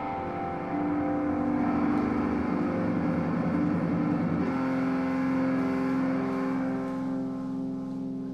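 Live band music from a saxophone, keyboard, guitar and drums quartet: long sustained, swelling tones rather than a beat. The sound grows louder about a second in, settles onto a new steady held note about halfway through, and fades near the end.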